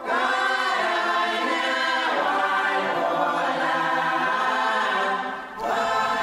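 Women's choir singing a hymn in sustained harmony, breaking off briefly near the end before a new phrase begins.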